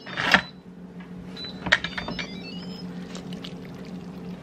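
Instant Pot lid being twisted open and lifted off the pot: a short scraping rush at the start, then a few clicks and faint squeaky glides as the lid turns on its rim, over a steady low hum.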